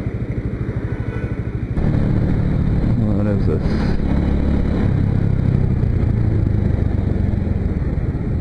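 Motorcycle engine ticking over with a regular low pulse, then about two seconds in the bike pulls away and the engine runs under way, a steady, louder low rumble.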